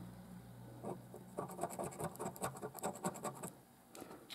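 A coin scraping the latex coating off a £1 National Lottery scratch card, in a quick run of short scraping strokes from about one to three and a half seconds in.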